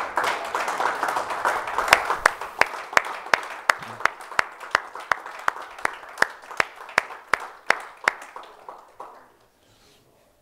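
Congregation applauding, settling into steady rhythmic clapping of about three claps a second that fades out near the end.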